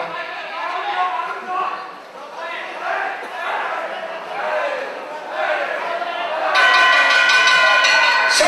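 Shouting voices from the crowd and ringside over ground-and-pound. About six and a half seconds in, a steady ringing tone starts suddenly and holds: the ring bell rung to signal the referee stopping the fight.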